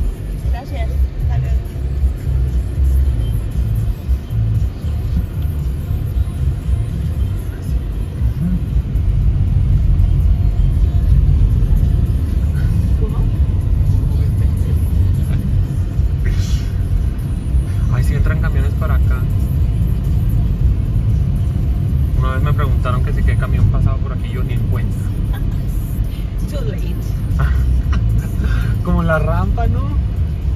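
Steady low rumble of a car driving, heard from inside the cabin, with faint voices in the background in the second half.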